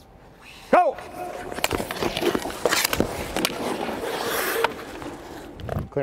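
Ice-hockey skate blades scraping and gliding on the ice, with scattered sharp clicks of stick and puck, as a skater comes in toward the net and pulls up; the scraping stops about four and a half seconds in. A short voice call sounds about a second in.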